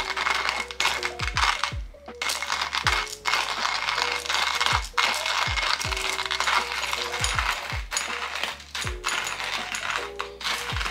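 Stainless-steel hand coffee grinder being cranked steadily, the beans crunching and crackling as the burrs grind them, with a few short breaks in the grinding.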